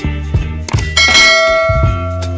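A bell ding sound effect strikes once about a second in and rings on, over background music with a steady beat.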